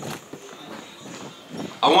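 Quiet scattered footsteps and knocks of people running down a school hallway, heard through the playback of a handheld video. A man starts to speak near the end.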